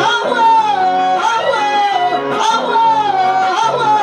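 A man singing a melody of long, wavering held notes into a microphone, accompanied by strummed acoustic guitars.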